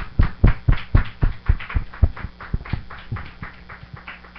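Rhythmic hand clapping in praise, about four claps a second, dying away over the last second.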